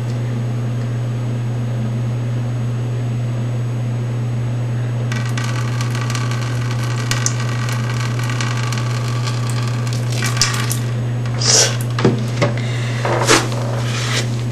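Saline water from a neti pot running through the nose and splashing out for several seconds, over a steady low hum. Near the end come a few short, louder sounds.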